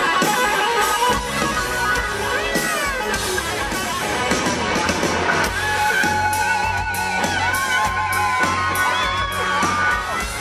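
Live rock band playing on an outdoor stage: electric guitar over bass and drums, with the audience audible.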